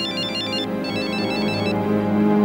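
A PDA-style mobile phone ringing with a fast, high electronic ringtone melody, played in two short phrases with a brief gap between them, over steady background music.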